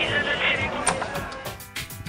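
Background voices over a steady noise bed that fades out, then a quick run of sharp clicks and knocks in the second half.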